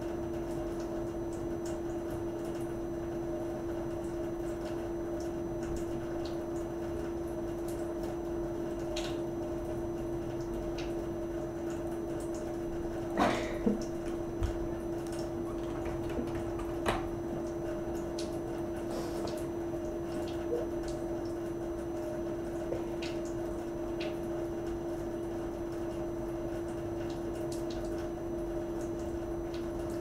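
A steady hum with scattered small clicks, and a few louder knocks about thirteen to seventeen seconds in.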